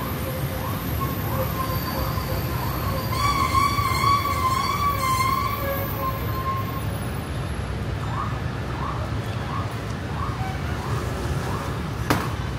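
A siren sounding a held, wavering tone for several seconds, loudest about four seconds in, over the steady noise of city street traffic. Short rising chirps come about twice a second before and after the held tone.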